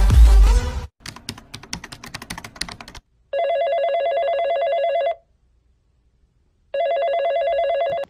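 An electronic telephone ring sounds twice as a call is placed, each ring a trilling tone about two seconds long with a pause of about a second and a half between. Before the rings comes a quick run of light clicks like keys being tapped. Loud beat-driven music cuts off about a second in.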